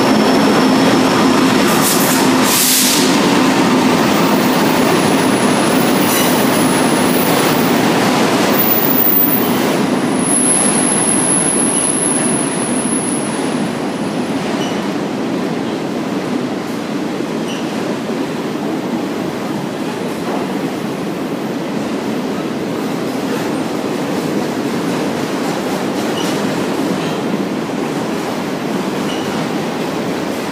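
CSX freight train passing close by: the diesel locomotive's engine hum at first, then a long run of autorack cars rolling past with a steady rumble of steel wheels on rail. There is a short sharp burst of noise about two and a half seconds in, and the sound gets slightly quieter after about ten seconds once the locomotive has gone by.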